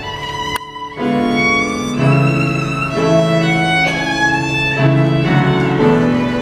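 Solo violin playing a slow melody of held, bowed notes that change about once a second, after a short break in the playing near the start.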